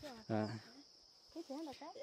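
Short spoken interjections, an "à" and a few brief syllables, over a steady high-pitched insect chirring that runs without a break.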